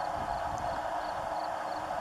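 Steady outdoor background noise: an even hiss with a faint low hum and no distinct event.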